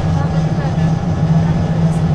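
City bus running on the road, heard from inside the passenger cabin: a steady low engine hum over rumbling road and tyre noise.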